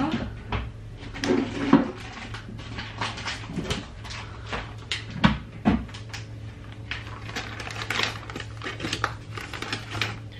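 Kitchen clatter as baking ingredients are fetched and set out: cupboard doors, packets and bowls knocking on the counter, with scattered sharp knocks throughout. A steady low hum runs underneath.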